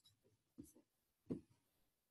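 Near silence on a webinar call line, broken by two faint, brief sounds about half a second and a second and a quarter in.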